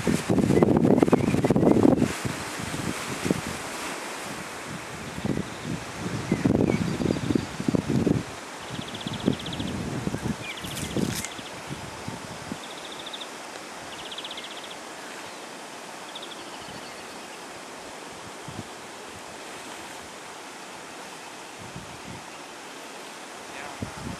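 Wind buffeting the microphone in heavy gusts over the first eight seconds, then a steadier, quieter outdoor breeze. A few short, high buzzy trills come in the middle.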